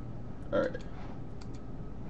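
Steady static and low hum on a webinar's voice line, the noise of a poor microphone or connection, with a man saying one short word about half a second in and a few faint clicks.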